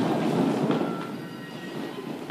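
Many dancers' heeled character shoes shuffling and stamping on a hard studio floor, with dance music playing underneath. There is one sharper stamp a little under a second in.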